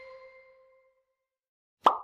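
Kahoot! quiz game sound effects: the last ringing notes of a chime fade out, then after a quiet spell a single short, sharp pop near the end as the next question card comes up.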